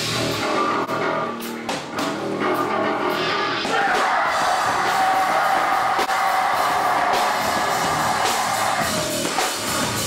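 Rapcore band playing live: distorted electric guitar, bass and drum kit, with a vocalist on the microphone. From about four seconds in a long sustained passage holds until near the end, where the drums come forward.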